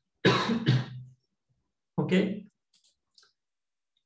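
A man coughing twice in quick succession, two sharp bursts about half a second apart.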